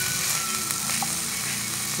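Broccoli, carrots and onion sizzling steadily as they stir-fry in a pan.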